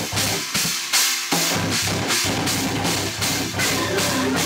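Metal band playing live: drum kit with steady cymbal and drum hits under chugging distorted electric guitars. The low guitar chug thins out briefly near the start, then the full band comes back in about a second and a half in.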